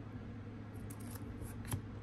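Faint handling of a hockey card in a plastic sleeve: light rustling with a few small ticks, over a steady low hum.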